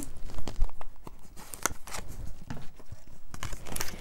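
A small cardboard box of blessing cards being handled and a card drawn out: soft paper and card rustling with scattered light clicks and taps.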